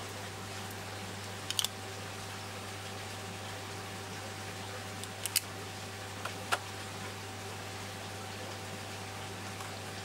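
A few light plastic clicks as coral frags and their tiles are pressed into small plastic frag containers: two close together about one and a half seconds in, two more about five seconds in, and a single one a second later. A steady low hum runs underneath.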